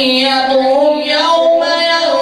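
A man's voice in melodic Quran recitation (tilawat), through a handheld microphone. A long, ornamented phrase is held on sustained, wavering notes, with a short break about a second in.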